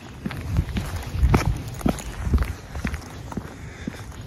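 Footsteps of a person walking on a concrete sidewalk, about two steps a second.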